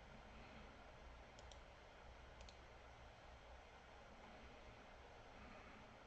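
Near silence: faint room tone with two pairs of quiet computer mouse clicks, about a second and a half in and again a second later.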